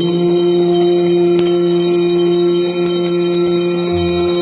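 Hindu aarti music: bells ring continuously over one long, steadily held note and a low drone.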